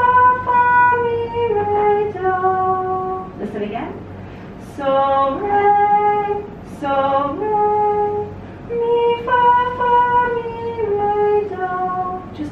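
A woman singing a melody unaccompanied on solfège syllables (so, re, mi, fa, do) in held notes that step up and down, phrase after phrase with short breaths between.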